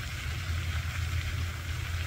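Steady rushing hiss of an aerating lake fountain's spray, over a low steady rumble.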